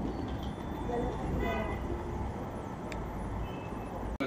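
Street ambience: a steady low traffic rumble with brief snatches of passers-by's voices.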